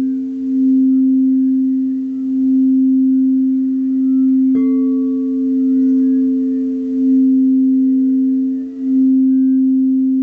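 Crystal singing bowl being sung by a mallet circling its rim: a steady low hum with a fainter higher overtone, swelling and dipping about every two seconds. About halfway a light tap adds a second, higher ringing tone over the hum.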